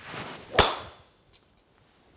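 Golf driver swung at about 82 mph clubhead speed, deliberately slowed, and striking a ball: a short rising whoosh of the downswing, then one sharp crack of impact a little over half a second in that dies away quickly.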